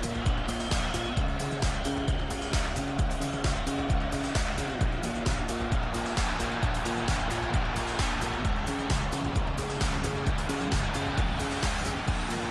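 Background music with a steady beat, about two beats a second, over a repeating low melodic figure.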